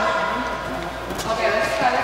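Indistinct voices with sustained musical tones underneath.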